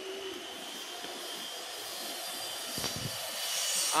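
Steady whir of a mechanical punch press's running motor and flywheel, with a single thump about three seconds in.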